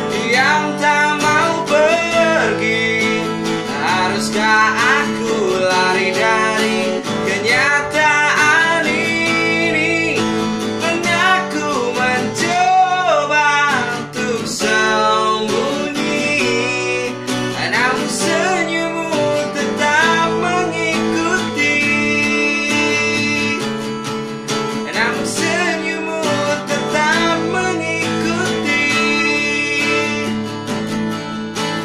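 Acoustic guitar strummed and picked as accompaniment, with a man singing the melody over it in long, wavering phrases, holding some notes in the second half.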